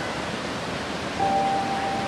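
Steady rush of water from a waterfall and creek. A long, steady held tone comes in a little over a second in.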